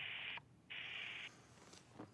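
Two short, faint, breath-like hisses, one at the start and one about a second in, heard through the same narrow telephone-quality line as the speaker's voice.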